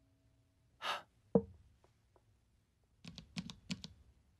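Sparse, quiet sound effects: a short breathy gasp about a second in, a single sharp knock just after it, then a quick run of six or so small clicks near the end.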